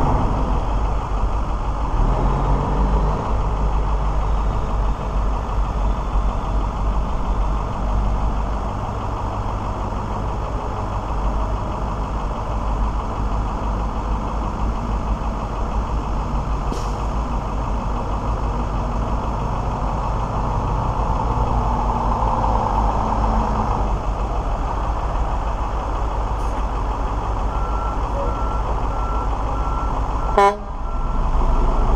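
2002 Mack Vision CX613 tractor's diesel engine running as the truck drives away and comes back around. Near the end a reversing alarm beeps at a steady, even pace as the truck backs up.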